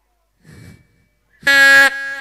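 A person's voice through the stage microphone: one short, loud shout held on a single steady pitch for about half a second, near the end, after a faint brief rustle on the microphone.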